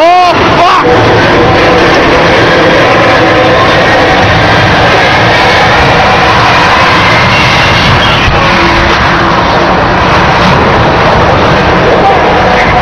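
Loud, continuous noise as a dragline's steel lattice boom is brought down, with a rising siren-like wail right at the start.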